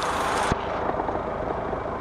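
Steady outdoor background noise, a low rumble with hiss, with a single click about half a second in, after which the high hiss drops away.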